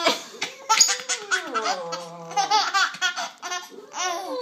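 A baby laughing hysterically in repeated high-pitched fits of giggles, set off by paper being ripped. A short, sharp tearing noise comes right at the start.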